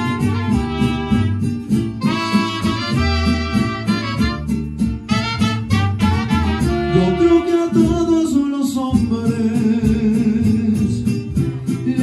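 Live mariachi band playing an instrumental passage: a melody line over steadily strummed guitars and a low bass line.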